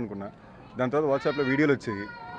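A man talking into press microphones: a short pause, then a drawn-out, wavering vocal sound that slides slowly down in pitch and runs into his next words.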